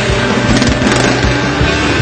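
Loud backing music with a steady drum beat.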